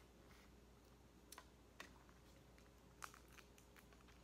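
Near silence: a few faint, short clicks from eating and handling shellfish, over a low steady hum from a room fan.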